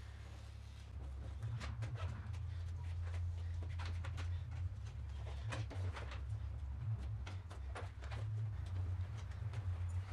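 Razor blade cutting and trimming excess vinyl from a padded seat back, with the loose vinyl being pulled and handled: a run of irregular small clicks and crinkles over a steady low hum.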